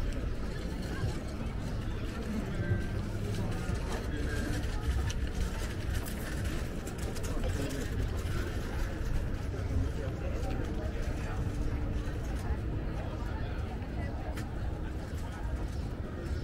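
Outdoor street ambience: indistinct voices of passersby over a steady low rumble.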